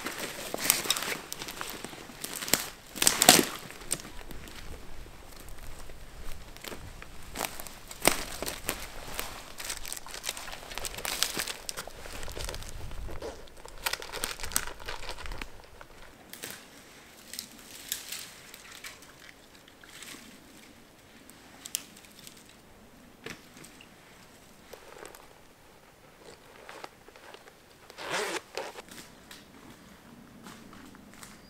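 Rustling and crinkling of a camouflage net being pulled over a backpack, mixed with cracking twigs and crunching dry forest litter underfoot. The handling noise is dense for about the first half, then thins to occasional cracks, with a louder rustle near the end.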